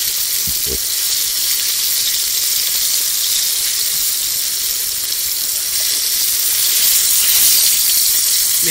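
Hot frying grease sizzling in a pan over a campfire: a steady hiss that swells slightly near the end.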